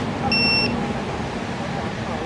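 Pole-mounted infrared temperature scanner giving one short high beep as it reads the temperature of a hand held up to it, over a steady rumble of traffic.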